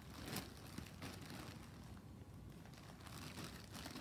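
Faint crinkling and rustling of a plastic mailer bag being handled, in a few short, scattered rustles.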